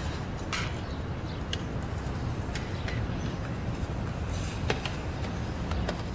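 Steady low background rumble of outdoor ambience, with a few faint clicks scattered through it.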